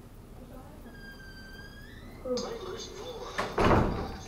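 A thin, slightly rising squeak about a second in, then a loud, heavy thump near the end.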